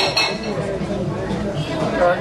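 A brief, sharp clink with a short ring, right at the start, over murmuring voices.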